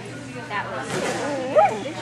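A dog's short, high yip about one and a half seconds in, over people's voices.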